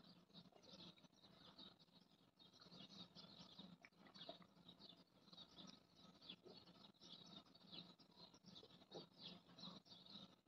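Near silence: quiet room tone with faint, scattered small clicks and chirps.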